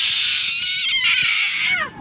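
A toddler's long, high-pitched squeal of delight, shrill and breathy, lasting almost two seconds before trailing off.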